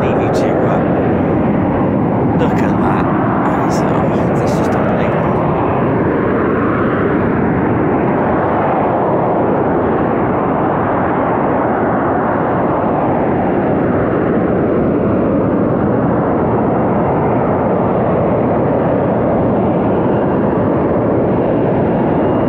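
Harrier GR7 jump jet's Rolls-Royce Pegasus vectored-thrust turbofan, a loud, steady jet roar as the aircraft hovers with its gear down.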